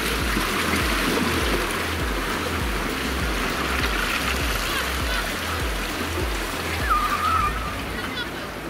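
Steady rush and splash of sea water. A faint repeating bass beat of background music runs underneath, and a short warbling call comes near the end.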